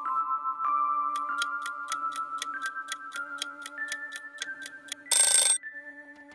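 Quiz countdown-timer sound: sustained music tones stepping up in pitch, with a clock ticking about four times a second from about a second in. Near the end, a loud half-second burst of noise marks the answer reveal.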